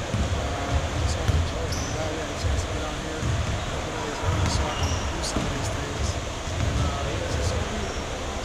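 Basketballs bouncing on a gym floor in repeated low thuds with sharp impact clicks and a couple of short high squeaks, under a man's speech.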